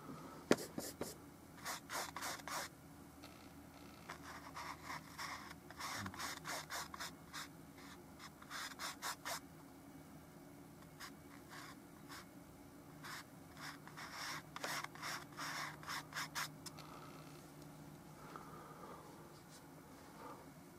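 Bristle paintbrush working oil paint in short, quick scrubbing and dabbing strokes, coming in runs of several strokes with pauses between.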